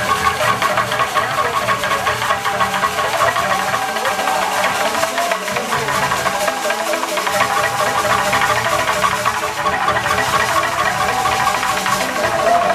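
Live Ugandan traditional ensemble music: a wooden xylophone played in fast, continuous interlocking note patterns over drums, steady throughout.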